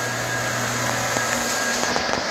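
Electric floor machine running steadily: a continuous whir with a low hum underneath that fades out about one and a half seconds in.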